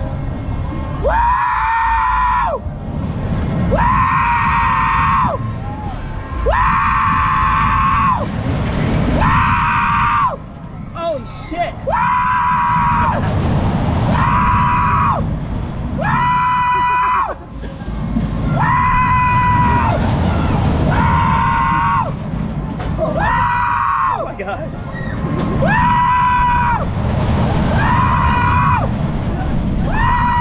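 Ring of Fire looping fair ride riders screaming a long held "woo" over and over, about one every two seconds as they go around the loop. Each scream rises at the start, then holds steady. Heavy wind rumble runs on the ride-mounted microphone.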